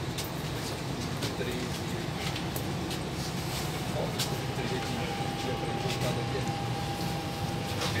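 Interior of a CPTM series 3000 electric train running into a station: a steady low rumble of the car on the track with scattered clicks, and a thin steady high tone that starts about halfway through. Passengers' voices are faint underneath.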